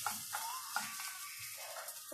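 A few light clicks and knocks from a dish being handled, most of them in the first second, over a steady faint hiss.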